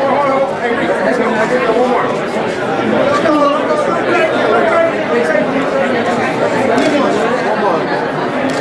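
Many voices talking at once, a steady loud chatter with no single clear speaker.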